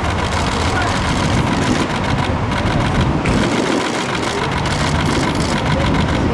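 Street noise: a vehicle engine running and traffic, with several people talking indistinctly.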